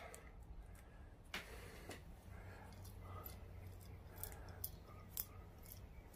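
Faint handling sounds with a sharp click about a second and a half in and another soon after: cutters snipping the zip tie off a ball screw. A few lighter clicks follow near the end.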